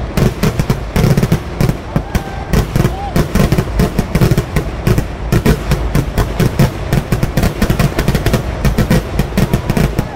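Fireworks display: an unbroken barrage of firecracker and shell explosions, several sharp bangs a second, as ground charges and aerial shells go off together.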